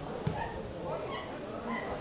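A football kicked once on the pitch about a quarter second in, among several short high calls.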